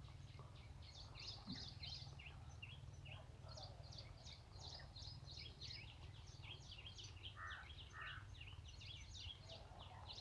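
Faint birds chirping outdoors, a steady stream of short, high calls, over a low steady rumble.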